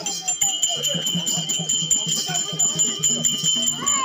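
Tamil folk-theatre accompaniment: harmonium-led music with a quick, steady beat, high bells ringing throughout, and voices over it.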